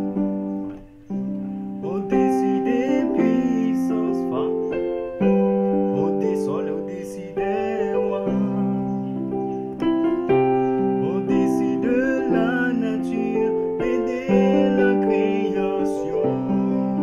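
Yamaha portable keyboard on a piano voice, played with both hands in sustained chords in C major. The chord changes every second or two, with a brief dip just after the start.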